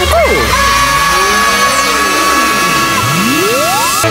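Electronic dance music in a DJ transition: a high tone is held over falling pitch sweeps, the bass cuts out about three seconds in, and a rising sweep climbs steeply into the next track.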